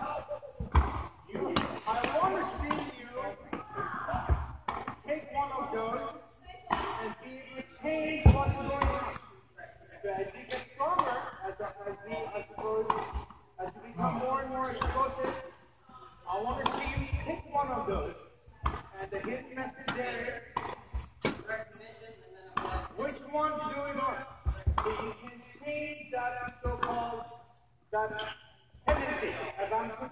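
People talking near the microphone, with sharp knocks at irregular intervals from a tennis ball being hit with racquets and bouncing on the court during a rally.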